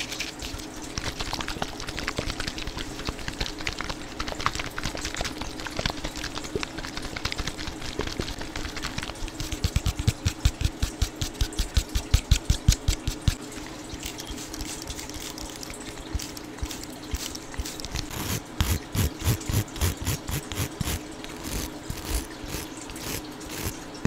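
Fingers tapping and scratching on a plastic spray bottle held right at the microphone, in quick runs of close-up taps, with louder rapid runs about halfway through and again later on.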